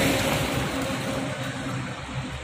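Street traffic noise: a steady rush of passing road vehicles that slowly fades.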